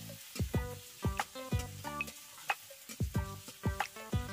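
Metal spatula scraping and tapping a steel kadai as chopped onion and tomato are stirred and fried down in oil, with a light sizzle underneath. The strokes come irregularly, about three a second, each leaving a short metallic ring from the pan.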